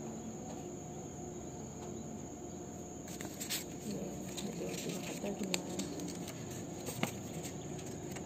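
Paper card and booklet being handled: rustling and a few sharp clicks begin about three seconds in, over a steady high-pitched whine.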